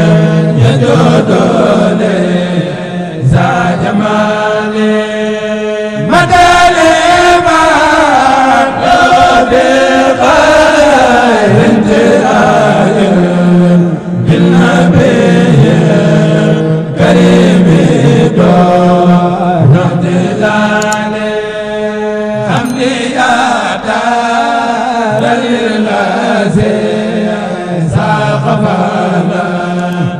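A man chanting a devotional song in Arabic and Wolof, with long, sliding held notes over a steady low drone.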